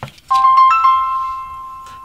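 HTC One M9 smartphone playing its startup chime through its speaker as it boots: a few quick bright notes about a third of a second in, the last one held and fading away.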